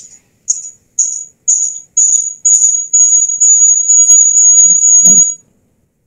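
A high-pitched tone, first in short beeps about twice a second that grow longer and merge into one steady tone, cut off suddenly just after a thump near the end.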